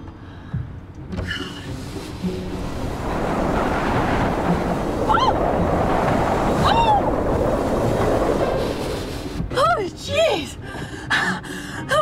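A car's side window is wound down by its hand crank, then a loud rush of wind through the open window builds over a couple of seconds and holds. A woman gives two short cries in the middle of it and screams near the end.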